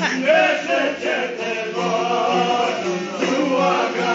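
Men singing an Albanian folk song together, accompanied by long-necked plucked lutes, with a steady low note running beneath the voices.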